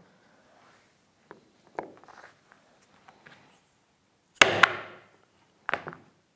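Hammer striking the plunger of a Trend corner chisel to cut a square corner into the rounded end of a routed groove in walnut: two sharp strikes a quarter second apart with a short ring, then a lighter one. Faint clicks come first as the tool is set against the wood.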